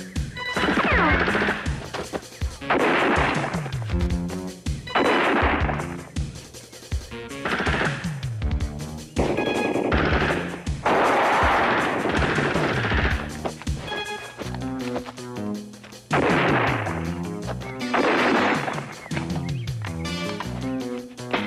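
Film gunfire: rapid bursts of shots, each about a second long, come about every two seconds, with a longer burst near the middle. Steady background music plays between the bursts.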